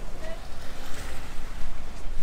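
Wind buffeting the microphone as a gusty low rumble, with a broad rushing noise that swells about a second in, and a brief faint voice early on.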